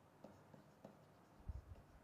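Faint taps and scratches of a stylus writing on a pen tablet, a few separate ticks with one soft low thump about one and a half seconds in, against near silence.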